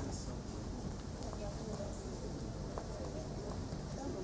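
Faint, indistinct voices over a steady hiss of room noise, with a sharp click at the very start and a few light taps.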